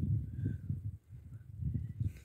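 Wind buffeting the microphone on an exposed hillside, an uneven low rumble that eases briefly about halfway through.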